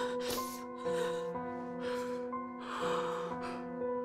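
A woman sobbing, with several short gasping breaths, over slow background music of held chords.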